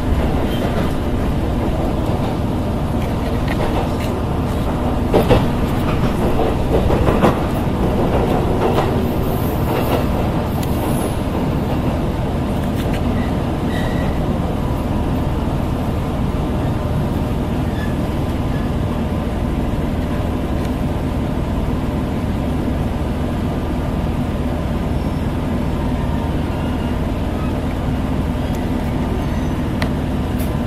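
Inside a diesel railcar on the move: steady engine and running rumble, with a cluster of sharp rail clicks about five to nine seconds in.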